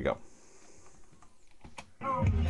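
A few sharp clicks from a computer keyboard, the loudest near the end.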